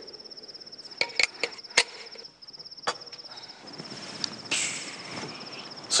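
Cricket chirping in a steady, rapid high pulse, as a night-time background, with a few sharp knocks about one to three seconds in and a brief hiss near the end.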